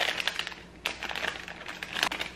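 An ice cream sandwich's crinkly wrapper being pulled open by hand, giving a run of crackling clicks with a short lull partway through.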